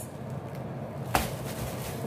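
A single short knock about a second in, as a plastic bag of powdered sugar is set down on a stone countertop, over a faint steady low hum.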